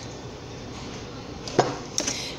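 A sharp knock about three-quarters of the way through, as pieces of fresh pineapple are put into a blender cup, with a second knock at the very end over low room noise.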